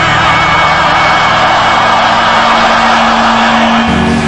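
Live hard rock band playing loud, with a long, wavering high note held over the band; near the end the band moves to a new chord.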